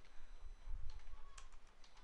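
A few faint computer keyboard keystrokes as a word is typed, over a low rumble in the first second.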